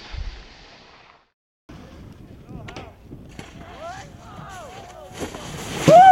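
A rumbling intro sting fades out, then after a brief silence comes snow-slope audio: people whooping and calling over wind noise, and a rush of snow spray building near the end as a snowboarder wipes out in powder, met by a shout.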